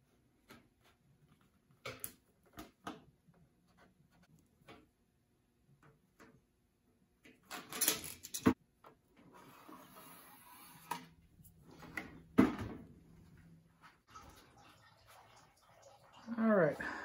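Quiet handling noises of a tape measure and a thin steel plate: scattered light clicks and taps, a louder cluster of clicks about halfway through, a short scratchy stretch just after, and one sharp knock about three quarters of the way in.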